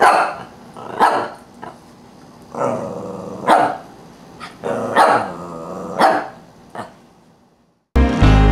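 Lhasa Apso barking in single sharp barks, about five spread over several seconds, answering the number of fingers held up to it. Some barks are led in by a lower, longer sound.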